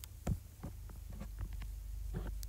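Low steady hum with a few soft thumps, the loudest about a quarter of a second in.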